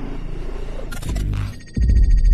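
Electronic music sting for a news channel's logo animation. A deep bass hit fades out, a bright noisy swish comes about a second in, and a second deep bass hit with a ringing high tone lands near the end.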